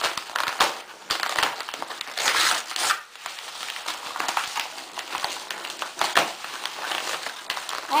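Padded paper mailer envelope crinkling and tearing as children's hands pull it open: irregular rustling with short rips.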